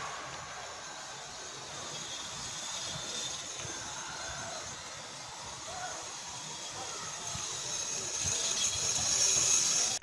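Steady hissing rush of burning wreckage and scattered fires, heard through a phone microphone, slowly getting louder toward the end.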